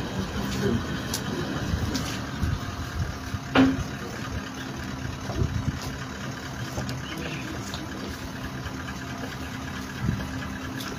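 A vehicle engine idling steadily, with a few scattered knocks and one sharper, louder sound about three and a half seconds in.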